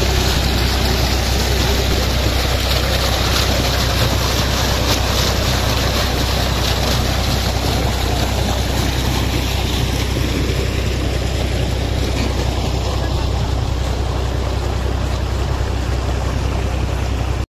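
A tubewell pump's engine running steadily with a constant low hum, while water gushes from the discharge pipe and splashes into a brick-lined channel.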